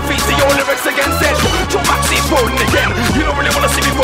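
Male MC rapping fast over a grime beat with a heavy, steady bass line.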